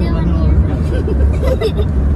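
Steady low rumble of a car on the road, heard from inside the cabin, with voices over it.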